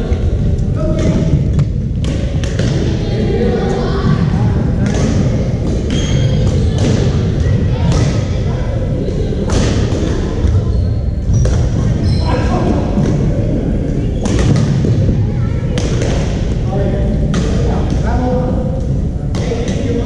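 Badminton rackets striking shuttlecocks, sharp cracks at irregular intervals from several courts, with thuds of footsteps on the court floor, over the babble of players' voices echoing in a large sports hall.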